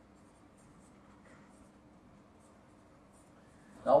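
Faint scratching of a felt-tip marker writing on flip-chart paper over a faint steady low hum.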